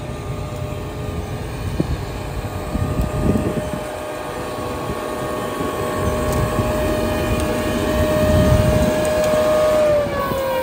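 Machinery running with a steady high whine held at one pitch over a low rumble, growing a little louder toward the end.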